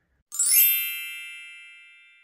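A bright chime sound effect, struck once about a third of a second in and ringing out as it fades away.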